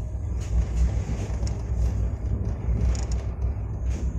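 A train running at speed, heard from inside the coach: a steady low rumble with a few short knocks from the wheels and running gear.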